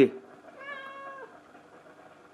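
A domestic cat meows once, a single call held at one pitch for under a second that dips at the end.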